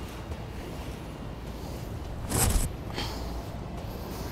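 Heavy four-layer polypropylene trailer cover rustling as it is pulled and draped over a roof edge, with one louder swish about two and a half seconds in, over a low steady rumble.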